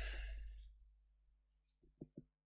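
A short breathy exhale right after speech, fading out within the first second, then near silence as the audio fades out, with only a faint steady hum and a tiny click near the end.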